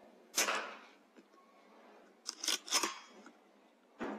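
A .22 Weihrauch HW100 PCP air rifle firing a single shot, a sharp crack about half a second in that fades quickly. About two seconds later there is a quick cluster of metallic clicks as the rifle's side-lever action is cycled.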